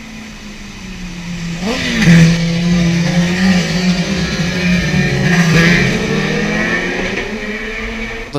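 Racing superbike passing at speed on full throttle, its engine note rising and dipping as it comes by, loudest about two seconds in with a second surge later on.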